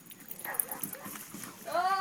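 Faint, quick footfalls of a Belgian Malinois running flat out across grass. A person's voice calls out near the end.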